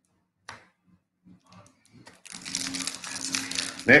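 Plastic wrapper of a Topps Chrome baseball card pack crinkling as it is handled in gloved hands, starting about two seconds in after a single click.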